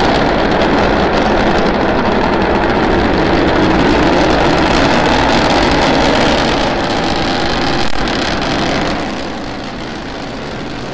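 Starship SN9's three Raptor rocket engines firing during ascent: a loud, steady roar that drops somewhat near the end.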